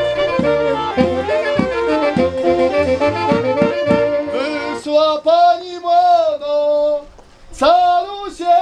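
A folk wedding band plays a lively tune with a steady beat, breaking off about five seconds in. A man then sings a folk wedding verse unaccompanied, pausing briefly near the end.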